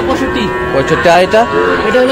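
Cattle mooing, with people talking alongside.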